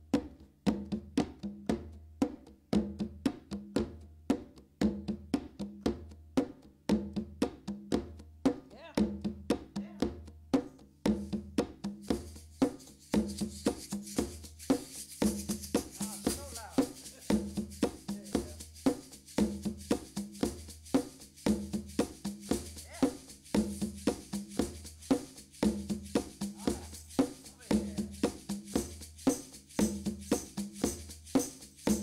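A looped hand-percussion groove at a steady tempo of about 116 beats a minute: sharp, woodblock-like clicks over a repeating low drum pulse. About twelve seconds in, a bright shaking layer joins the loop.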